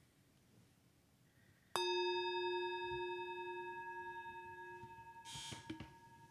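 Tibetan singing bowl struck once, about two seconds in, ringing with a low hum and several higher overtones that fade slowly; a brief rustle near the end. The strike closes a minute of silent meditation.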